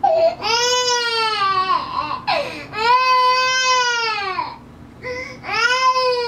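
Infant crying in three long wails, each lasting about one and a half to two seconds and rising then falling in pitch, with short breaths between them.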